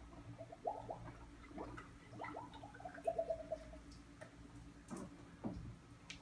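Distilled water poured from a jug into a nearly full GM truck cooling system, gurgling faintly in short, irregular glugs.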